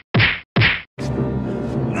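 Animated-film fight sound effects: two sharp whacks of blows landing, about half a second apart, followed about a second in by sustained film score.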